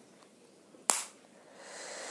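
A single sharp pop about a second in, from a toy plastic bubble balloon bursting, followed near the end by a steady breathy hiss of air.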